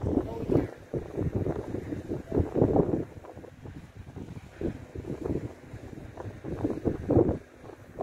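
Wind buffeting the microphone in uneven gusts, a low rumbling that surges and drops, easing off shortly before the end.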